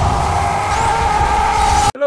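Loud cinematic intro soundtrack: a dense roar with a deep rumble and a held tone rising slightly in pitch. It cuts off suddenly near the end.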